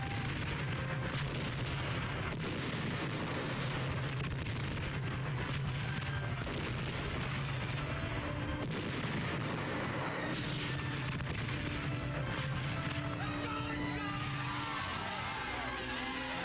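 Battle sound effects: artillery shells bursting again and again, with gunfire, over a steady bed of music.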